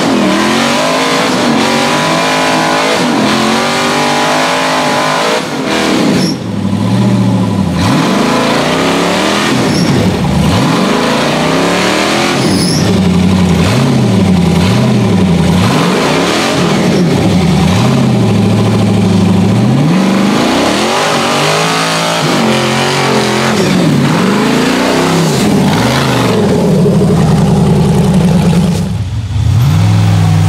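Off-road buggy's engine revved hard at full throttle again and again, its pitch climbing and falling every second or two. The engine briefly drops away about five seconds in and again just before the end.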